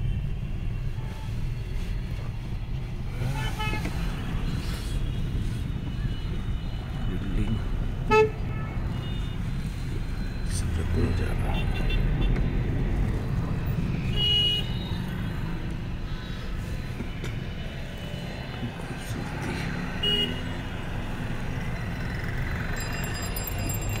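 Road traffic heard from inside a moving vehicle: a steady engine and road rumble, with several short horn honks, the loudest about eight seconds in.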